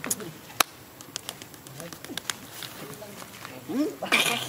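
Scattered sharp clicks and taps, the loudest about half a second in, over faint bird calls. A short rising vocal sound comes near the end.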